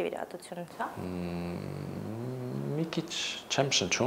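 A low man's voice holding a long drawn-out hum or vowel for about two seconds, steady at first and wavering in pitch toward the end, between short bits of speech.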